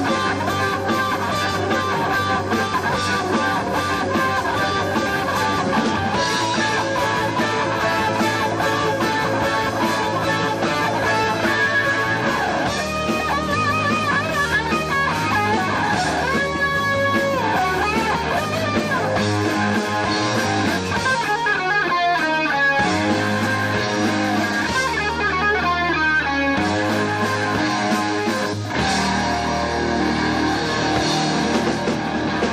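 Live rock band playing: an electric guitar plays lead lines with bent, gliding notes over bass guitar and drums.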